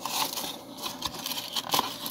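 Tissue paper rustling and crinkling as it is handled, in irregular bursts, with a sharper crackle near the end.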